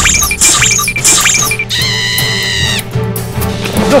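Background music with a repeating rhythm of quick falling chirps. Partway through, a high held chord sounds for about a second before the music carries on more quietly.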